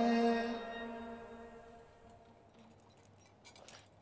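Singing ending on a held note that fades out over the first second or two. Then faint metallic clinks of a thurible's chains and censer as it is swung, with a short louder cluster of clinks near the end.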